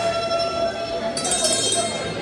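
Kathak ankle bells (ghungroo) jingling in a burst of footwork from about a second in, over the recorded Tarana music with a long held note.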